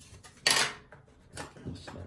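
Hard plastic doorbell mounting parts clattering against the cardboard box as a plastic bracket is lifted out: one sharp clack about half a second in, then two lighter knocks.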